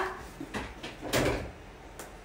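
A bathroom door bumped and rattling: a few light knocks, then a louder, brief rattle a little past a second in.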